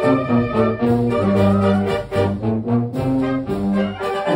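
Middle school wind band playing a march, brass to the fore over woodwinds including flute, in a run of held chords that change every half second or so.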